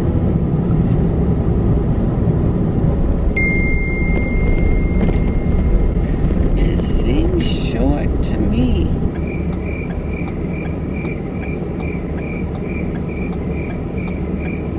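Road and engine noise inside a moving SUV's cabin. About two-thirds of the way through, the turn-signal indicator starts sounding a high beeping tick about twice a second.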